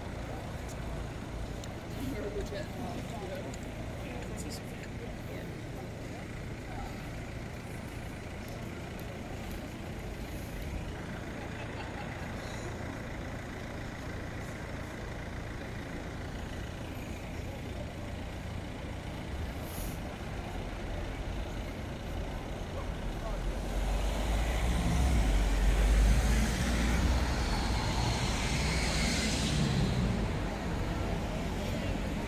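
Street traffic: cars running past with a steady low rumble, then a louder vehicle passing close, building from about three-quarters of the way through and loudest near the end.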